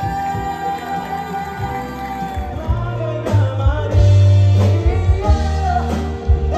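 A male singer holding long, sustained notes over a band accompaniment; a heavy bass and drum beat comes in about halfway through.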